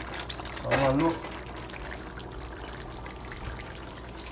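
Pork in gravy cooking on the stove: a steady, watery bubbling hiss. A few light clicks in the first half second come from the sliced cabbage being placed in a pan.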